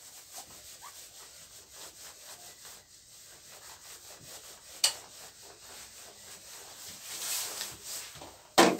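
A handheld eraser wiping marker writing off a whiteboard in quick back-and-forth rubbing strokes. A single sharp tap comes about five seconds in.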